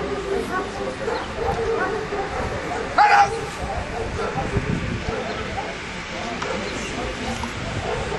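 A steady murmur of voices, with one short, loud call about three seconds in.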